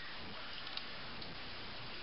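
Steady faint hiss of room noise, with a couple of faint light clicks about two-thirds of a second and a second and a quarter in.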